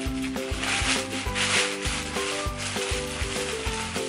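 Plastic packaging and fabric rustling as baby clothes are handled, loudest about a second in, over background music with a beat.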